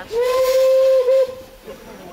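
Steam locomotive whistle giving one loud, steady, single-pitched blast of a little over a second, with a brief break near its end, over a hiss of steam.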